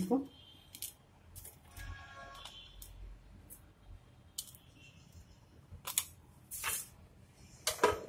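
Light, scattered clicks and taps, about six over several seconds, as crisp fried bhakarwadi pieces are set down one by one on a paper plate.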